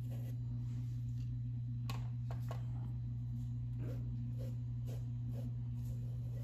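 Soft scratching of a paintbrush stroking back and forth over painted fabric, with a few sharper clicks about two seconds in, over a steady low hum.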